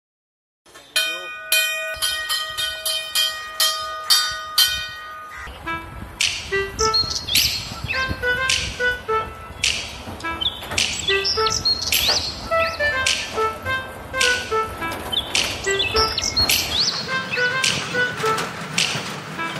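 A large cast metal station bell rung by its rope, struck about eight times in quick succession, each strike ringing on with long overlapping tones. After about five seconds it gives way to music with high chirping sounds over a steady low rumble.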